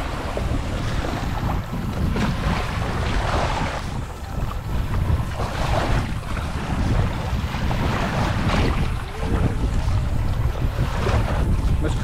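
Wind buffeting the microphone in an uneven rumble, over the wash of small lake waves lapping against the shore.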